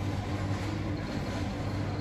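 Steady supermarket room tone: a low hum with an even wash of ventilation noise.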